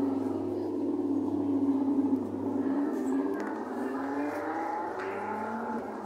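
Simulated car-engine sound effect from a Jolly Roger Silver Spydero kiddie ride's driving game, played through the ride's speaker. Its pitch dips and rises several times, as if the car were slowing and revving up again.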